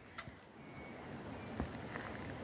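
Quiet outdoor background with a few faint, light knocks: one shortly after the start and two weaker ones near the end.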